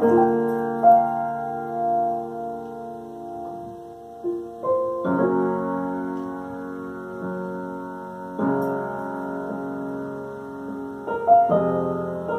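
Piano improvisation: slow chords struck a few seconds apart, each left ringing and fading before the next.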